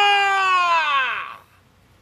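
A man singing unaccompanied, holding one long high note that slides down in pitch and trails off about a second and a half in.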